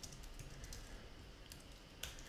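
Faint, scattered keystrokes on a computer keyboard as code is typed.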